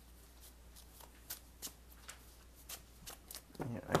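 Sleeved trading-card decks being shuffled and handled by hand: a string of light, irregular card clicks.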